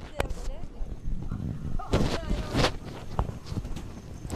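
Short bursts of people's voices without clear words, amid scattered sharp clicks and knocks.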